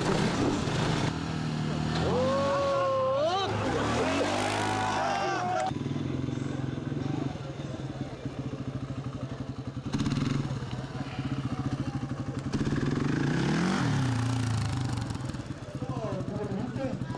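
Quad (ATV) engines running at low speed with a steady hum. One revs up and back down about three-quarters of the way through.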